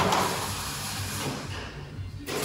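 Steady hiss of workshop background noise over a low hum, fading and thinning out near the end.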